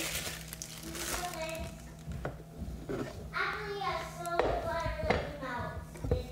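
A young child talking in short phrases, with plastic bag crinkling in the first second and a few sharp knocks.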